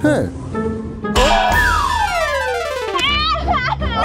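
Cartoon sound effects over music: a quick falling glide at the start, then a long descending whistle-like slide lasting about two seconds, followed near the end by a high-pitched cartoon voice wailing and crying.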